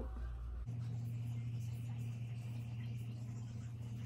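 A steady low hum that sets in about a second in, under faint soft rubbing and dabbing from a makeup sponge on skin as concealer is blended.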